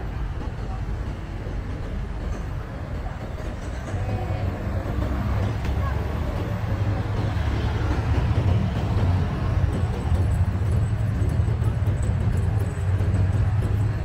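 City street ambience: a steady low rumble of traffic that grows louder about four seconds in, with voices of passers-by mixed in.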